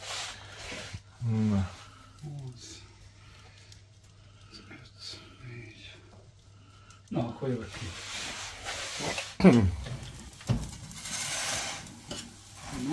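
Quiet intermittent talk over a low steady hum; in the last few seconds the door of a home Effe pizza oven is opened and a metal pizza peel slides in over the oven floor, with a thump and scraping.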